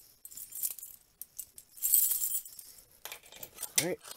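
A bunch of keys on a ring jangling and clinking in hand while a small test key is worked into a wall-mounted key switch. The loudest jingle comes about halfway through.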